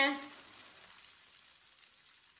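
Faint, steady sizzle of oil around cauliflower chapli kababs shallow-frying in a pan, the kababs at the end of their cooking.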